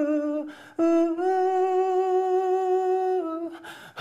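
A male voice singing unaccompanied, holding the long wordless 'ooh' of the song. It takes a breath about half a second in, then sustains one steady note for over two seconds and breathes again near the end.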